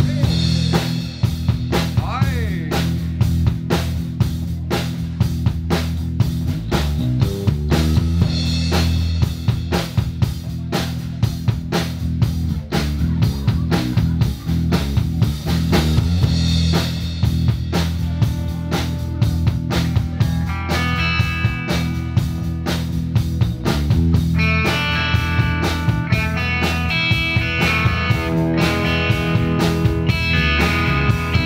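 Live rock trio playing an instrumental passage: electric bass and drum kit keep a steady beat, and electric guitar notes come in over them about eighteen seconds in, growing stronger from about twenty-four seconds.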